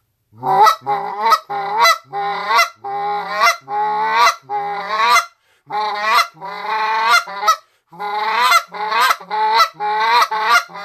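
A Canada goose call blown in a long run of short clucks, about two a second, each note jumping up in pitch at its break. It is a 'human rhythm': the same cluck over and over, with each note barely stopped before the next starts, not the clean, separated notes of a live goose.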